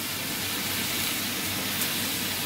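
Noodles, bean sprouts and peppers sizzling steadily in a hot frying pan over a gas flame while being stirred.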